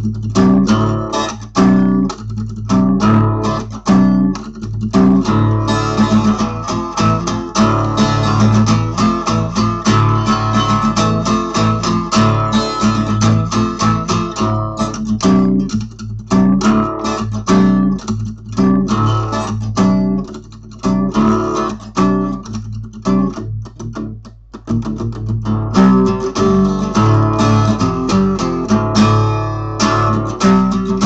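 Acoustic guitar played solo in a metal-riff style: fast, choppy strummed riffs broken by frequent abrupt stops.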